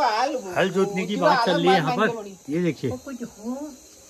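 A woman talking in conversation, her speech trailing off near the end, over the steady high chirring of crickets.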